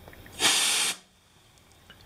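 Can of compressed air, held upside down, sprays a single short hiss of cold liquid propellant onto the window glass, starting about half a second in and lasting about half a second.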